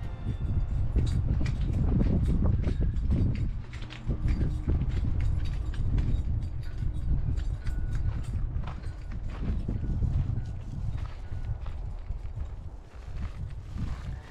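Footsteps of a person walking on brick paving and a gravel path, many short steps and scuffs over a constant low rumble on the microphone.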